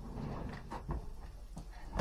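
Hand-held garlic press being worked over a bowl: a few light clicks and knocks of its handles.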